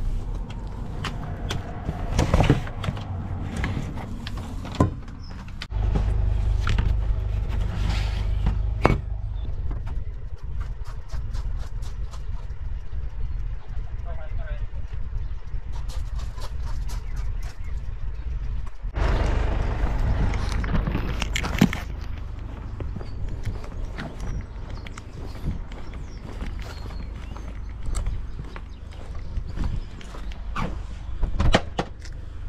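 Van doors and parcels being handled: a run of knocks and clicks over a low rumble of wind on the camera microphone.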